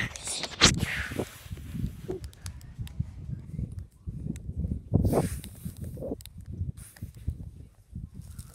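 Handling noise from a tablet held by someone spinning around: irregular rubbing, bumps and footfalls, with a few short breaths or vocal sounds, the loudest about five seconds in.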